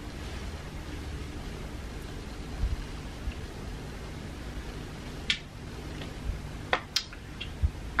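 Quiet room tone with a low steady hum, broken by a few brief faint clicks or rustles in the second half.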